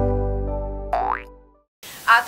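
The closing chord of a channel logo jingle, held and fading out, with a quick rising cartoon-style swoop about a second in. It cuts off to brief silence shortly before the end.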